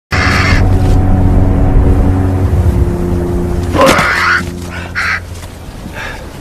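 A crow cawing: a harsh call near the start, then a few more short calls about four and five seconds in, over a low, sustained music drone that fades out around the second call.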